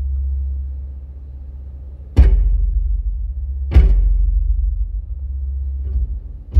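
Bass-heavy music from a Ground Zero car audio system with subwoofer, heard inside the car: deep, heavy bass held throughout, with two big drum hits about two seconds and nearly four seconds in. The bass is deep enough to shake the whole car.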